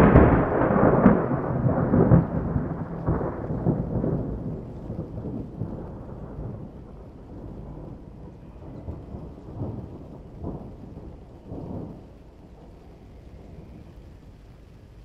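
A deep rolling rumble that dies away slowly over about eight seconds, with a few fainter swells of rumble near the end.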